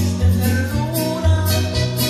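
A man singing into a handheld microphone over a Latin American backing track, with a bass line stepping between low notes about every half second under a long, held sung note.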